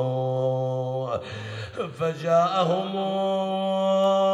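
A man's voice chanting an Arabic elegy in long held, wavering notes without clear words. There is a brief break about a second in, and the melody resumes on a higher held note.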